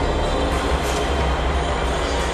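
Lake water splashing and churning as a group of people strike and move while standing waist-deep in it, heard as a steady rushing noise with a low rumble underneath.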